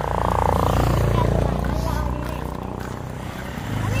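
A motor vehicle's engine running close by at a steady pitch. It grows louder in the first second, eases off, then grows again near the end, with faint voices over it.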